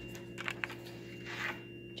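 Plastic hang tag being slid into the slot of a hotel door lock: a couple of faint clicks about half a second in and a brief soft scrape near the end, over a steady low hum.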